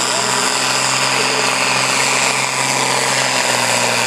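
John Deere farm tractor's diesel engine running flat out under heavy load as it drags a weight-transfer sled in a tractor pull, a loud, steady engine note that holds without a break.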